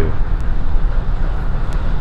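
A steady, low outdoor rumble that wavers in level, with a couple of faint clicks.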